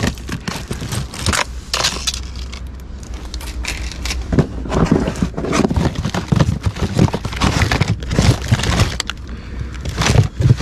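Hands rummaging through a cardboard box of toiletries: plastic bottles and pill containers knocking together, plastic packaging crinkling and cardboard rustling in a steady run of irregular clicks and rustles.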